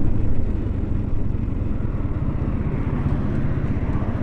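KTM Duke's single-cylinder engine running steadily on the move, a low, rapidly pulsing rumble, with wind rushing over the helmet-mounted microphone.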